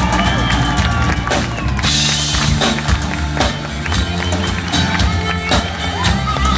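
Live band playing an instrumental passage on electric guitar, bass guitar and drum kit.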